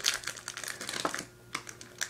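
Crinkly foil-lined candy bar wrapper being pulled open and handled by fingers: a quick run of sharp crackles and clicks for about a second, then it goes quiet.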